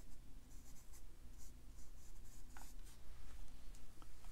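A round watercolour brush scratching faintly across rough cold-press cotton paper in a few short strokes as it paints jagged tips, with a light tap a little past halfway.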